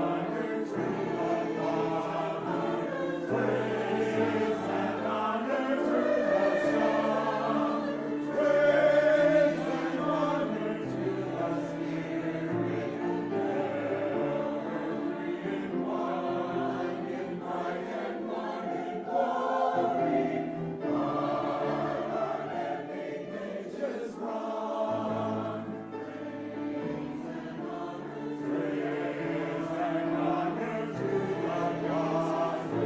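Mixed choir of men's and women's voices singing in parts, holding long notes in chords that change step by step.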